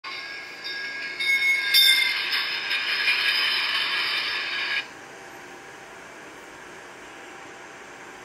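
Recorded train sound played through a phone's speaker: several steady high tones over noise, cutting off suddenly just before five seconds in. A faint steady hiss follows.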